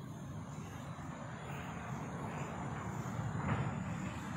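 Steady low rumble of a distant engine, growing slowly louder.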